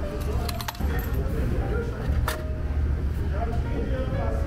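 Canned-drink vending machine dispensing: a few sharp clunks and metallic clinks as a can drops into the delivery tray and the change coins fall into the return cup, over a steady low hum.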